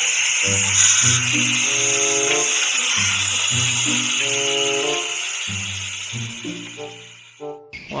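Background music: a melody of held, stepping notes over a bass line, with a steady hiss underneath. The music fades and cuts off shortly before speech returns.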